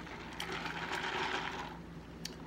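Sipping a drink through a straw from a plastic insulated mug: a soft airy sucking noise lasting about a second and a half, over a steady low background hum.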